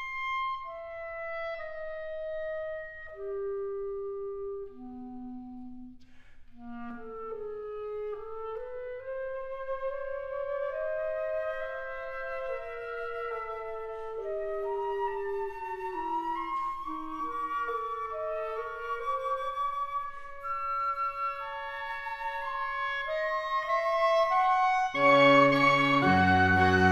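Woodwind octet of piccolo, flutes, B♭ clarinets, bass clarinet and baritone saxophone playing. It opens with a thin line of held notes stepping downward. From about eight seconds in, several voices move together and build, and a louder, fuller chord with low notes comes in near the end.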